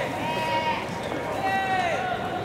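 High school baseball players' drawn-out shouted calls during infield fielding practice: one long call at the start lasting under a second, and another beginning about one and a half seconds in.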